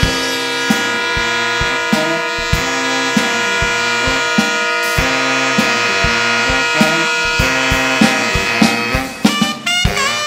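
Saxophone ensemble with drum kit playing a funk tune: sustained saxophone chords over a stepping line of low notes and steady drum hits, with a quick drum fill near the end.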